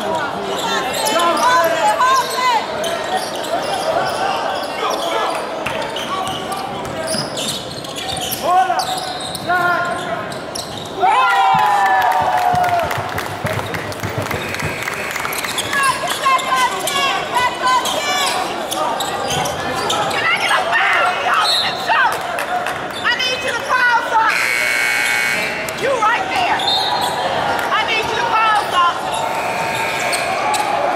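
Youth basketball game in a large gym hall: a basketball bouncing on the hardwood court amid players' and spectators' voices. About 24 seconds in, an electronic buzzer sounds for about a second and a half.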